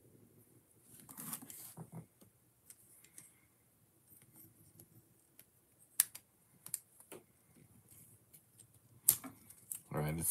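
Plastic Technic-style building pieces being handled and pressed together: light scattered clicks and rattles, with a few sharper clicks about six and nine seconds in.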